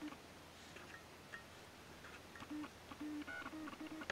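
Faint short electronic beeps: one at the start, then several in quick succession over the last second and a half, over quiet room tone with a few light clicks.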